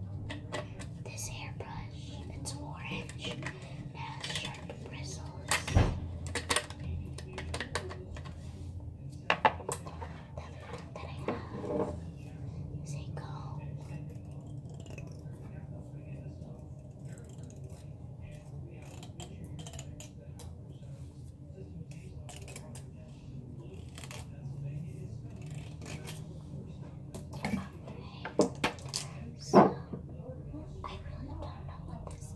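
Close-up ASMR handling sounds: fingers rubbing and tapping the bristles of a hairbrush, later a stack of cards being handled, with scattered sharp taps and clicks and a cluster of louder clicks near the end, over a steady low hum.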